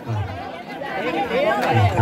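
Indistinct chatter of several voices, quieter in the first second and louder again toward the end.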